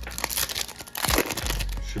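Foil wrapper of a 2023 Topps silver trading-card pack crinkling as it is torn open by hand, with a sharp crackle about a second in.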